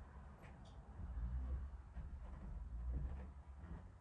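Footsteps coming up a staircase: faint low thuds, louder in the middle, with a few light knocks.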